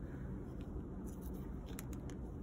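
Quiet room hum with a few faint, short ticks of construction paper being handled and pressed onto a paper bag.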